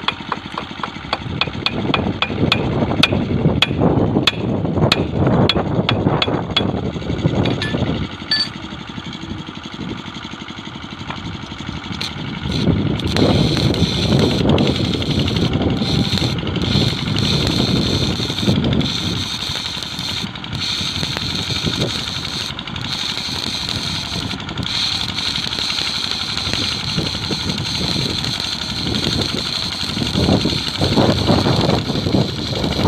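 A chipping hammer knocks slag off a fresh weld bead on a steel switch tongue rail, two or three knocks a second for the first several seconds. From about twelve seconds in, a manual metal arc (stick) weld crackles and hisses steadily as the next layer of weld is built up on the rail.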